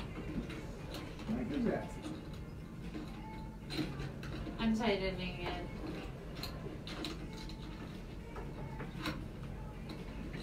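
Scattered light clicks and knocks of microphone stands and mics being handled and adjusted, over a steady low hum and a few faint, indistinct voices.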